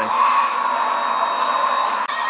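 A steady drone from a TV drama's soundtrack: an even hiss with one mid-pitched tone held through it, level throughout, with no voices.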